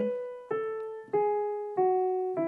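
Digital piano playing single notes down the E major scale, stepping from B through A and G sharp to F sharp. The notes are struck evenly, about three in two seconds, and each rings on until the next.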